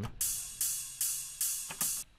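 Sampled ride cymbal loop played back in a four-on-the-floor pattern, one hit on every beat: five strikes about 0.4 s apart, each ringing out and fading before the next.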